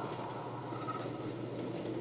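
Steady low background hiss with a faint low hum, with no distinct sound events: room tone between lines of dialogue.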